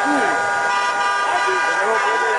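Several car horns held and honking together in celebration, forming a steady multi-toned blare, over a crowd of people shouting and calling out.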